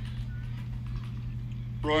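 Steady low electrical hum with an uneven low rumble underneath, in a gap between a public-address announcer's phrases. A short faint whistle comes about a third of a second in, and the announcer's voice returns near the end.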